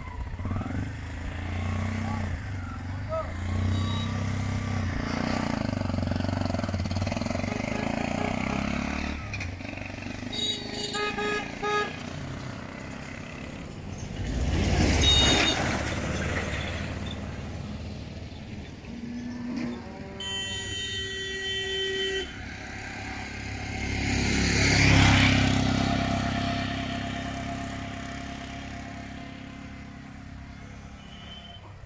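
Traffic on a narrow rural road: vehicle engines passing, with two louder swells as vehicles go by close. A horn sounds twice in the middle, once in short toots and once held for about two seconds.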